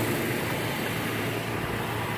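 A 2016 Toyota Tacoma's 3.5-litre V6 idling steadily, heard outside the truck.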